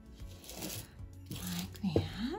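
A painted river rock being picked up and turned on paper over a wooden table, giving two scraping rustles, the second ending in a short rising squeak near the end. Soft background music plays under it.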